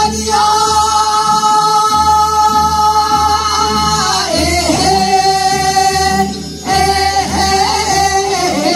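Women singing together into microphones over an amplified backing track with a steady low beat. They hold one long note for about four seconds, slide down to another held note, and pause briefly between phrases a little past halfway.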